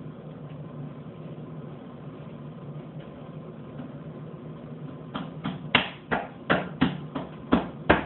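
A toddler's hands slapping a mirror mounted on a wooden door: about ten sharp slaps in quick, uneven succession, starting about five seconds in, over a faint steady hum.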